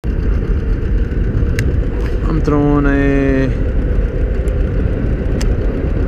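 Steady, loud wind buffeting an action-camera microphone on a small boat out on open water, with a short drawn-out voice sound about halfway through and a few light clicks.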